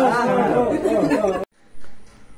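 Several people talking over each other, cut off abruptly about one and a half seconds in.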